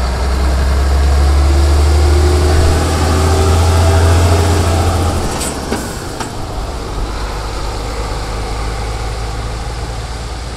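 Heavy truck diesel engine running with a strong low drone, its pitch slowly rising over the first five seconds. The drone drops away about five seconds in, a few sharp clicks follow, and a quieter steady engine rumble carries on.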